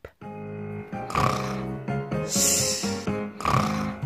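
Cartoon snoring sound effect for a sleeping hare: a snore drawn in about a second in, a long hissing breath out, then the next snore starting near the end, over light background music.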